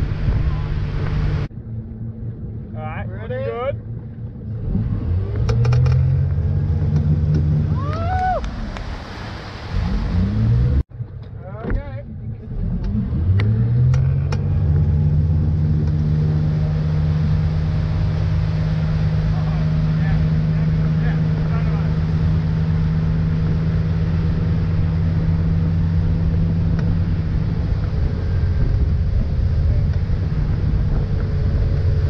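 A tow boat's engine pulls a wakeboarder, with water and wind rushing past. Its pitch rises twice as the boat accelerates, then holds steady at speed. The sound breaks off abruptly about a second and a half in and again about 11 seconds in.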